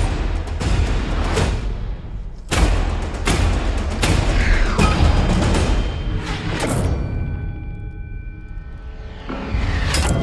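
Trailer score with heavy percussion hits and booms at uneven spacing over a low rumble. About seven seconds in it drops to a quieter held chord, then a rising whoosh builds into a final hit.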